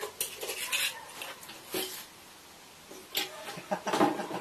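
A thin plastic bag being handled: a few short, separate crinkles and clicks.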